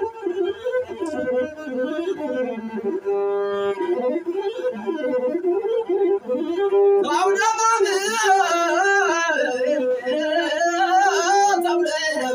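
Masinko, the Ethiopian one-string bowed lute, played with its arched bow in a wavering melody of sliding and held notes. About seven seconds in, a man's voice joins, singing over it in an ornamented, quivering azmari style.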